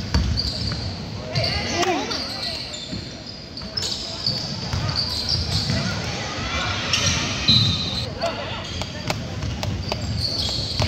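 Basketball bouncing and players' feet on a hardwood gym court during play, with voices shouting across the hall.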